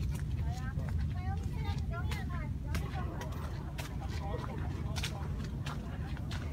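Wind rumbling steadily on a phone microphone, under faint, indistinct chatter of people talking and a few light footstep-like ticks.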